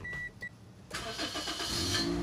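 Two short electronic beeps, then about a second in the Toyota Wish's 1ZZ-FE 1.8-litre four-cylinder engine is cranked and starts, picking up and settling into a steady idle.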